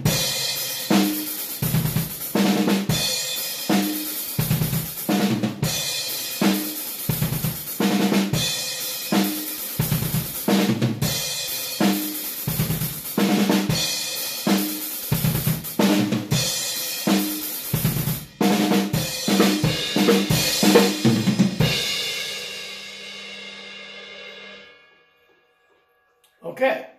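Acoustic drum kit played at a slow tempo: repeated single-stroke-four fills on snare and toms over double bass drum, punctuated by crash cymbal hits. About three-quarters of the way through the playing stops and a cymbal rings on and fades, then is cut off by hand near the end.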